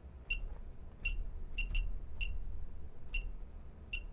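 Short high-pitched key-press beeps from a Horner OCS controller's touchscreen, about seven of them at irregular intervals, one for each tap on its on-screen numeric keypad while setpoints are entered.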